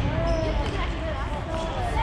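Futsal play on a wooden indoor court: players' shoes squeaking on the floor and the ball bouncing and being played, with young players' voices calling out.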